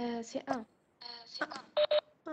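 A person's voice heard through a video-call audio link, in short choppy fragments with a flat, telephone-like tone.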